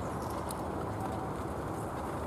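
Hoofbeats of a single horse pulling a four-wheeled carriage across a sand arena, over a steady low rumble.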